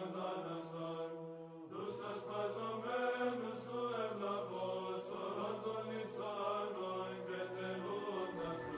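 Orthodox church chant: voices holding slow, sustained notes over a steady low drone, with a new phrase starting about two seconds in.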